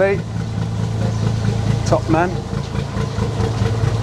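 Narrowboat diesel engine idling steadily in the lock, a low even chugging hum.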